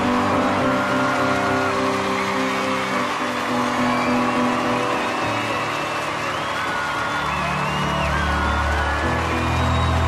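Music with held chords under an audience cheering and applauding, with whoops rising above it. Deep bass notes come in about seven seconds in.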